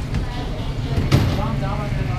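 Busy street ambience with a steady low rumble, a short sharp sound about a second in, and a voice starting briefly near the end.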